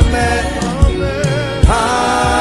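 Live gospel praise music: held sung notes over a steady low beat that thumps about every 0.8 seconds.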